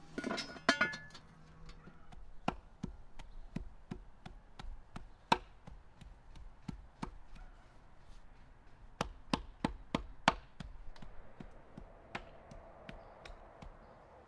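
A metal lid clanks and rings as it is set onto a pot in the first second. Then a cleaver chops raw meat on a wooden chopping block in a run of sharp strikes, roughly two a second.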